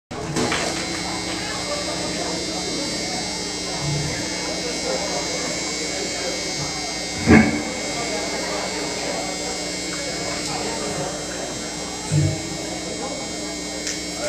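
Steady electric buzz from stage amplifiers and the PA between songs, over crowd chatter. One sharp loud thump about seven seconds in, and two softer low thumps near four and twelve seconds.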